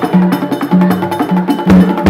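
Drums and a sharp, clicking percussion instrument playing a fast, steady, repeated rhythm of ceremonial dance music, with no singing over it until just after.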